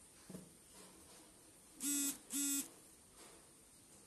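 Two short electronic buzzer beeps, a low steady tone each lasting about a third of a second, about half a second apart and a couple of seconds in, after a soft knock near the start.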